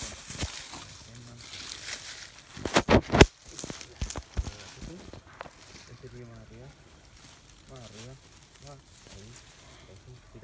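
Rustling and scraping of a handheld phone carried through dry brush and undergrowth, with a cluster of sharp knocks about three seconds in. Faint voices come in during the second half.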